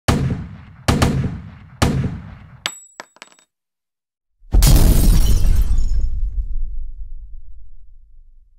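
Logo-intro sound effects: three heavy booming hits about a second apart, each dying away, then a few short clicks with a thin high ringing note. After a second of silence comes a loud fiery whoosh with a deep rumble that fades out slowly.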